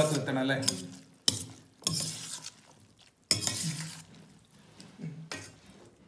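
A steel spoon stirring and scraping rice around a stainless steel bowl, in a few separate strokes, with a voice trailing off in the first second.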